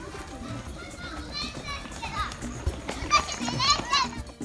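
Young children shouting and squealing as they run and play, in two bursts about a second in and near the end, over background music.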